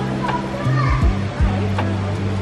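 Background music with sustained bass notes and a deep, recurring beat, with voices over it.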